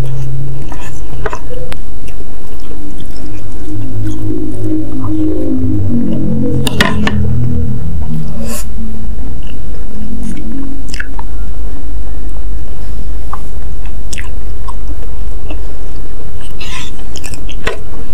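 Close-miked chewing of a mouthful of spicy instant noodles and meatball soup, with scattered sharp wet clicks and smacks. A low steady hum runs underneath for the first half.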